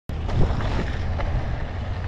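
Wind buffeting an action camera's microphone on a moving mountain bike: a steady low rumble that cuts in suddenly.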